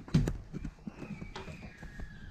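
Footsteps in sandals on a hollow wooden floor: one loud knock just after the start, then several lighter steps.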